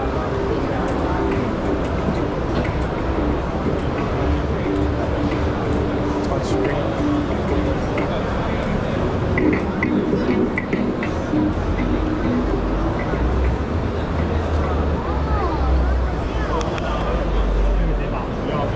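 Exhibition-hall ambience: many people talking indistinctly at once, with music playing from the booths and a steady low rumble.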